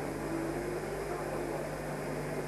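Steady low hum and hiss of an old analog camcorder recording, with faint voices in the background.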